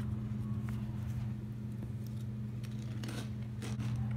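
Crunching of a tortilla chip being bitten and chewed, a few crisp crunches near the end, over a steady low electrical hum.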